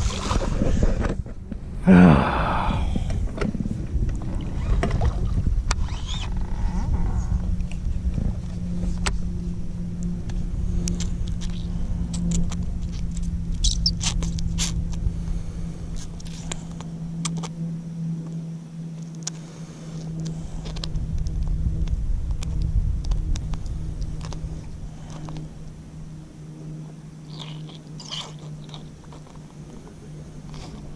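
A splash as a released bass drops back into the water, followed by a loud sudden sound about two seconds in. After that a steady low hum and rumble runs under scattered small clicks and rubbing as a hollow-body frog lure is handled.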